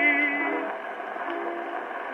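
Edison Diamond Disc phonograph playing an electrically recorded 78-era disc: a tenor holds a note with vibrato that ends about a third of the way in, leaving the piano accompaniment playing on alone. The sound is thin, with no deep bass and no high treble.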